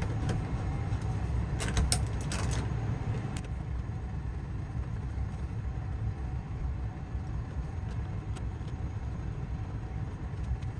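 A steady low machine rumble, with a quick cluster of small clicks about two seconds in and a few faint single clicks later, as a screwdriver drives the mounting screws of an occupancy-sensor switch into a plastic device box.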